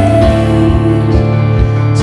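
Live worship band playing a slow song: held chords over a steady bass line, with drum beats about twice a second.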